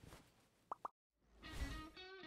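Two quick rising pops in a row, then after a brief silence a short outro jingle swells in with bright sustained notes.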